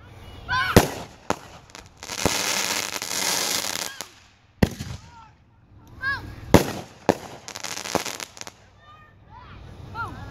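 Consumer fireworks going off: about seven sharp bangs at uneven intervals, with a dense crackling hiss lasting about two seconds near the start.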